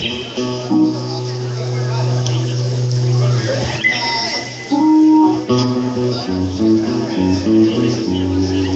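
Live rock band playing: guitar and bass with held, changing notes.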